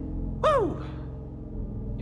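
A person's short voiced sigh about half a second in, its pitch falling steeply, over a steady low hum.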